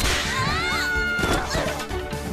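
Cartoon fight sound effects over background music: a sharp whip-like crack as a magic blast hits, a high gliding cry, and a clatter near the end as the riders crash to the floor.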